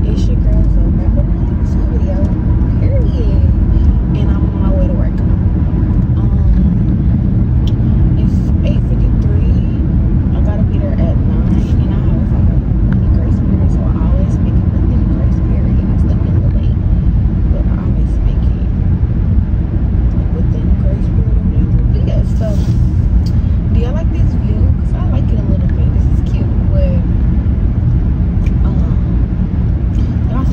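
Steady low road and engine rumble inside a moving car's cabin, with a woman's voice talking faintly over it.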